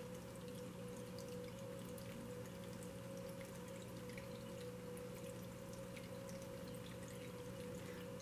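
Small tabletop water fountain trickling faintly with scattered drips, over a steady low hum from its pump.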